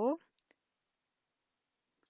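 A spoken word trails off, then two faint, short computer clicks about half a second in, followed by near silence.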